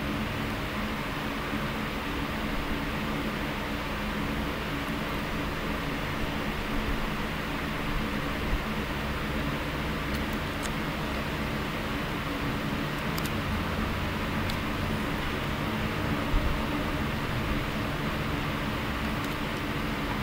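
Steady machine hum with an even hiss, like a running fan, with a few faint clicks and light knocks.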